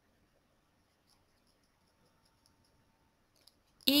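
Near silence with a few faint clicks, then a voice starts saying the word "eagle" near the end.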